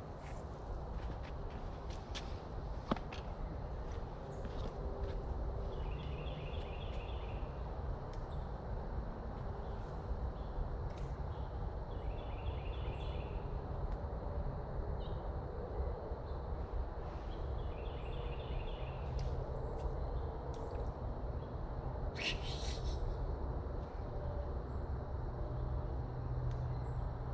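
A bird calling a short trilled phrase three times, about six seconds apart, over a steady low rumble of outdoor ambience, with a few faint clicks and a brief louder rustle near the end.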